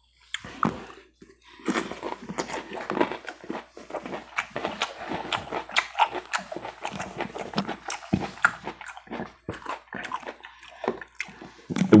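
A mouthful of crunchy salad being chewed close to a clip-on microphone: dense, irregular crunching that goes on for about eleven seconds.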